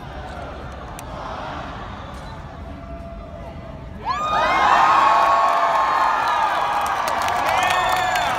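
Large crowd murmuring, then about four seconds in a sudden loud burst of cheering with many high shouts that carries on.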